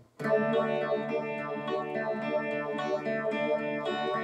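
Electric guitar played with tremolo: sustained notes pulse rapidly in a running melody. The playing comes back in after a brief gap just at the start.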